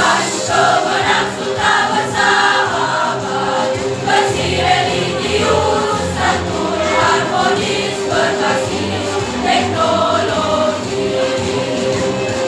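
A mixed choir of school students singing a march song together, conducted, with a steady held tone under the voices.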